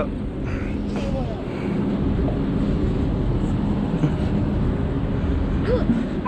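Steady low rumble of a diesel engine idling.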